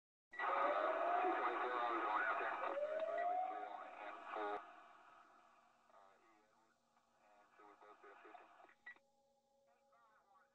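Voices heard over a radio with a narrow, tinny sound and two rising whistles. The audio is loud for the first four and a half seconds, then drops suddenly to fainter chatter, with a click near the end.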